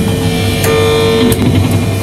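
Live rock band playing: electric guitar and bass guitar holding sustained notes, with a few drum hits.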